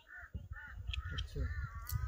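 A crow cawing: a few short calls in the first second, then a longer drawn-out call near the end.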